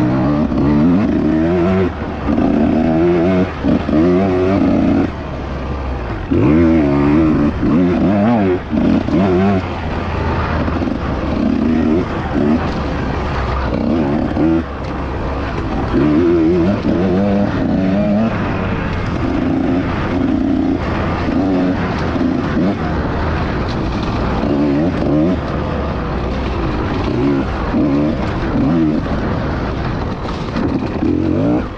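Husqvarna TE150 two-stroke enduro bike engine revving up and down in short throttle bursts, its pitch rising and falling every second or so with a few brief drops back toward idle, as it is ridden slowly through tight, technical trail.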